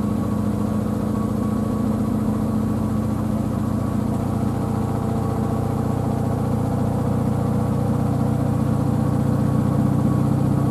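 Samsung WW90K5410UW digital-inverter washing machine spinning its drum at speed: a steady motor hum with several fixed tones, growing slightly louder near the end.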